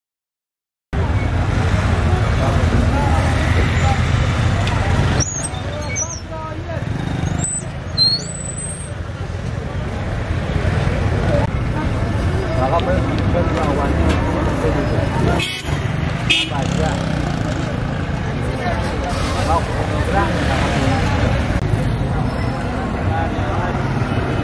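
Busy market-street ambience starting about a second in: motor traffic from rickshaws and motorbikes running steadily under the voices of passers-by talking. A few short, high chirps sound between about five and nine seconds in.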